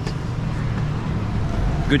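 Street traffic: a steady low rumble of vehicles on a busy city road.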